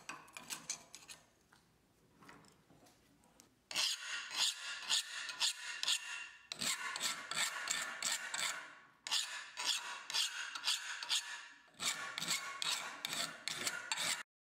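A hand file scraping back and forth across a clamped steel strip in quick strokes: a few light strokes first, then four long runs of loud strokes from about four seconds in. The tone changes from section to section: on the hardened steel the file skates, on the soft part it bites.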